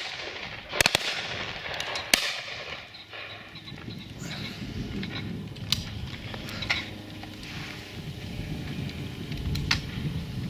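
Shotguns firing at driven game birds: a close pair of sharp shots about a second in, another a second later, then fainter single shots every second or two.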